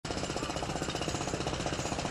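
Powered machinery at a collapsed-building rescue site, running steadily with a rapid, even hammering rattle of about a dozen beats a second.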